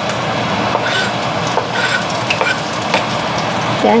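Chopped garlic sizzling steadily in hot oil in a cast iron wok, with a few short scrapes and clicks of a knife on the plastic cutting board as it is pushed in.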